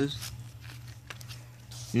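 Quiet room tone with a steady low hum and a faint click about a second in, between bursts of speech.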